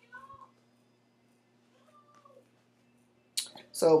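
A cat meowing faintly, twice: a short call right at the start and a softer one about two seconds in.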